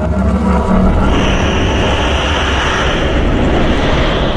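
Cinematic sound-design rumble: a loud, steady low drone under a dense engine-like rush. A high hiss joins about a second in.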